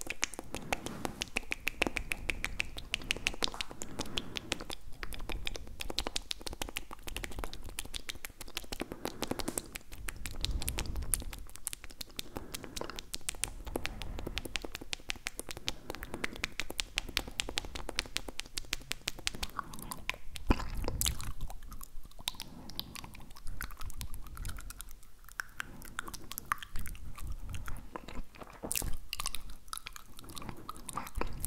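Close-up tongue and mouth sounds made right against a foam-covered handheld recorder's microphone: a dense, continuous run of rapid wet clicks.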